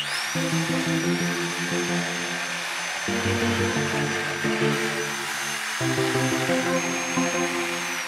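Peugeot electric jigsaw sawing through a wooden board clamped in a vise. Its motor whine climbs as it starts, holds steady through the cut, and drops near the end. Background music plays underneath.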